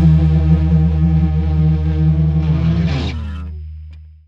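Closing chord of an alternative rock song: distorted electric guitar and bass ringing out and fading. A short downward pitch slide comes about three seconds in, as the chord dies away.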